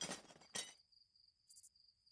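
Cricket chirping, a thin high pulsing trill, starting about half a second in, with a brief faint high clink just past the middle.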